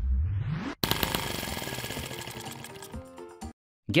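Miniature single-cylinder four-stroke model engine firing up about a second in and running fast with a rapid, buzzing rattle that fades, over background music. It cuts off abruptly just before the end.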